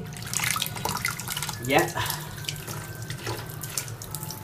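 Water splashing and spattering as a jet from a small submerged 12 V brushless DC pump sprays across a basin and onto a tiled wall.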